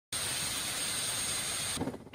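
Kamov Ka-52 attack helicopter running: a steady rushing noise with a thin, high, steady whine, cutting off shortly before the end.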